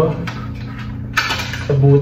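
Light plastic handling and scraping as a motorcycle helmet's clip-on rear spoiler is worked into its mounting slot on the shell.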